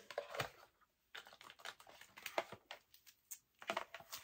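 Light, irregular clicks and rustles of merchandise packaging being handled while an item is picked up and unwrapped.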